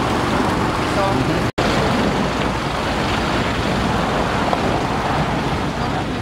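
Steady rush of road traffic at a busy intersection, broken by a brief dropout about a second and a half in.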